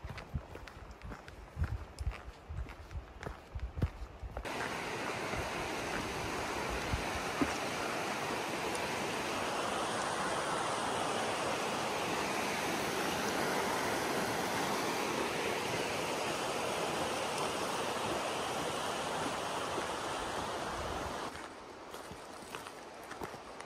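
A few soft low thumps, then from about four seconds in the steady, even rush of a rocky mountain stream flowing under a footbridge. It cuts off suddenly about a second before the end.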